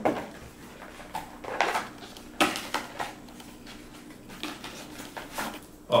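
Hands handling a small cardboard box and its contents: scattered light taps, scrapes and rustles, about one or two a second, as the box is opened and a strap is pulled out.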